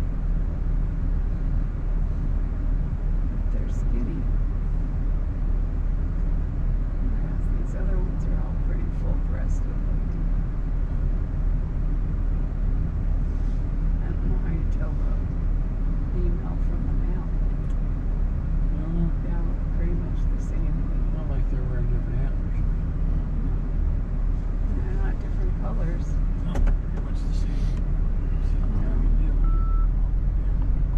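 Car engine idling with the vehicle at a standstill: a steady low hum heard from inside the cabin.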